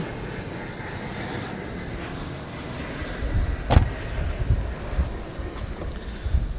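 Steady outdoor background noise with a low rumble on the microphone, and one sharp thump a little before four seconds in.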